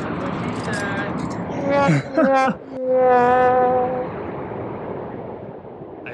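Wind rushing steadily on the microphone, with a person's voice over it: a few short words about two seconds in, then one drawn-out call held on a steady pitch for about a second.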